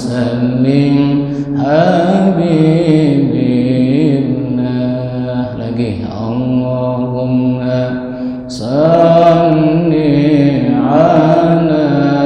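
A man's solo Islamic devotional chant, sung into a microphone in long, drawn-out melodic phrases with wavering, ornamented held notes. He pauses for breath about six seconds in and again about eight and a half seconds in, then comes back louder.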